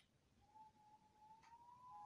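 Near silence: room tone with a single faint, thin tone that starts about half a second in and rises slowly and slightly in pitch.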